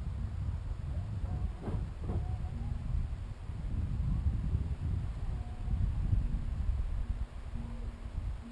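Wind buffeting the camera's microphone, a low, uneven rumble, with two faint knocks about two seconds in.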